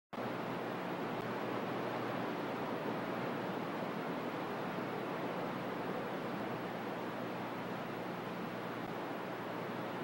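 Steady static hiss from a radio receiver with no station transmitting, the noise cut off below the low bass like a radio's audio.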